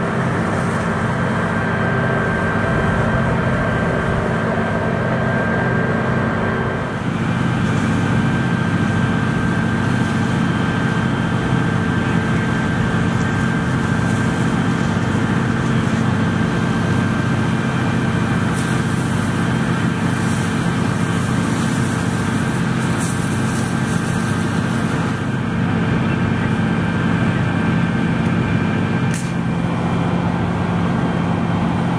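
A fire engine's pump and engine running steadily at constant speed to feed a hose line, with the hiss of water spraying from the hose nozzle.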